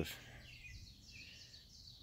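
Faint woodland ambience with distant birdsong: soft, wavering high chirps through most of the gap.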